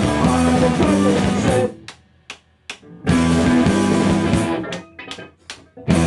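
Rock band playing live, with electric guitar, bass and drums, in a stop-start riff. The full band cuts out suddenly less than two seconds in, leaving a few short staccato hits, and comes back a second later. It breaks again near the end with four more short hits.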